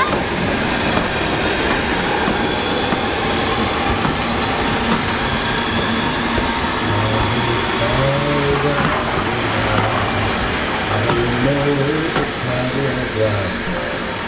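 A BR Standard Class 4 4-6-0 steam locomotive and its coaches alongside the platform, giving a steady rumbling noise. About halfway through, a man's singing voice begins a slow song over it.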